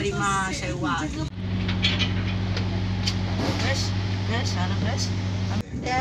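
Inside a passenger train carriage: passengers talking over the train's running noise. About a second in this gives way to a steady low hum from the train with faint voices over it, which cuts off abruptly near the end.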